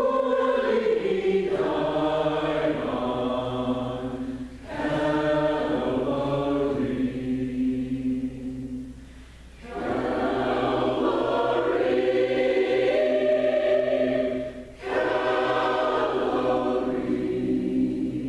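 Mixed choir of men's and women's voices singing a sacred choral piece in sustained phrases, with three short breaks between phrases.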